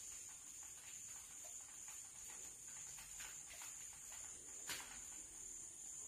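Chalk on a blackboard as a word is written: a run of faint, irregular taps and scratches.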